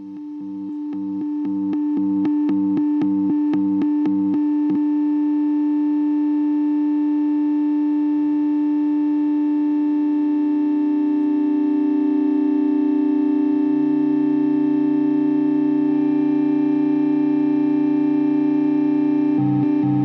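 Electric guitar through a Hologram Electronics Infinite Jets Resynthesizer pedal: a synth-like sustained tone swells in over the first couple of seconds with a rhythmic stutter of about two or three pulses a second in its low notes. It then holds as a steady drone whose lower notes shift a couple of times in the second half, and a rhythmic chopping comes back near the end.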